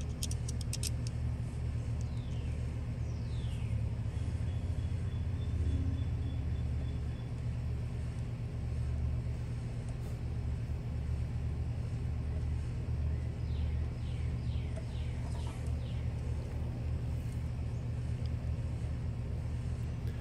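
A steady low rumble with a faint hum runs underneath, with a few light metal clicks in the first second from small screwdriver and bolt work, and short falling bird chirps now and then.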